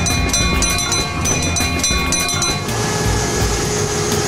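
Bell on a garbage truck ringing, struck several times a second, the signal that the refuse collection truck is coming. Near the end the ringing stops and the truck's engine and compactor run with a steady hum.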